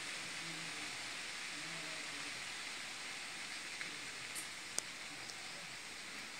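A steady hiss with no clear source, with a faint click about five seconds in.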